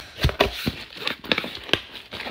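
Cardboard shipping box being pulled open by hand: the flaps rustle and scrape, with several short sharp crackles.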